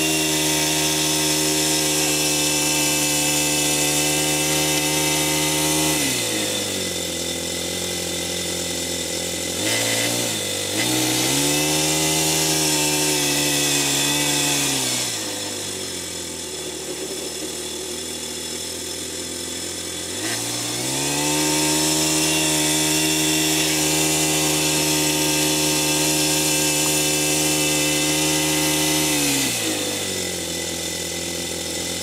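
Small 15 cc four-stroke model engine of a 1:8 scale BAT tracked dozer running at high revs. The revs drop off about six seconds in, pick up again around ten seconds, fall back to a lower speed from about fifteen to twenty seconds, rise and hold high, then drop again just before the end.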